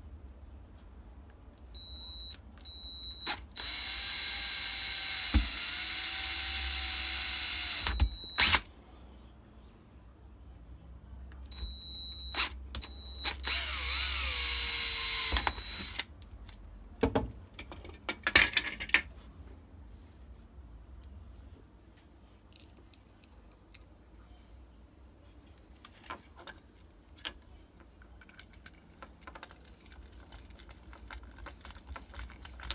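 Power drill with a small bit drilling a hole through a black switch enclosure, run in two bursts of about five and three seconds, each started with a couple of short trigger blips. The motor's whine dips as the bit bites and falls away as it slows at the end of the second run. A few sharp knocks follow from handling the box.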